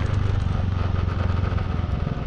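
Motorcycle engine running steadily at road speed, with wind and road noise.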